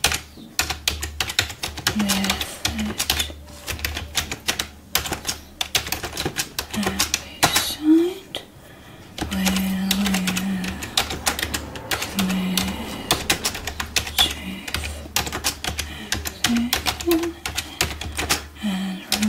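Pencil writing on paper: quick scratching and tapping strokes, with a short pause about halfway through.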